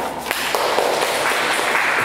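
Audience applauding, building up over the first half second and then steady.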